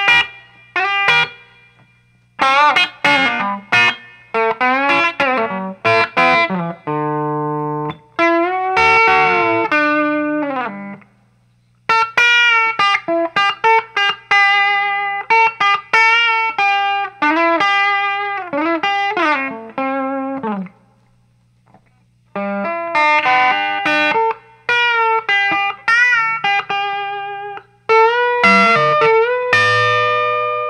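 Amplified electric guitar playing a lead guitar line note by note, with string bends, in phrases broken by short pauses.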